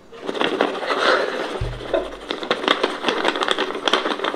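Sound from a Korean variety show clip: young women's voices chattering and laughing, with music under them and a short low hum about a second and a half in.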